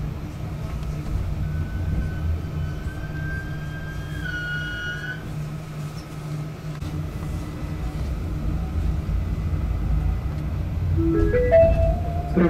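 Steady low running hum inside a narrow-gauge electric railcar, with a thin rising electric whine from about a second and a half in to about five seconds. Near the end an onboard chime of stepped rising notes sounds, the signal that a passenger announcement is about to play.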